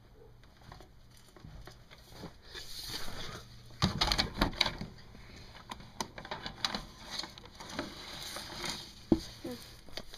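Handling noise of someone reaching around behind a pet cage to catch a ferret: rustling and scraping with scattered knocks, loudest in a cluster of knocks about four seconds in and a sharp click near the end.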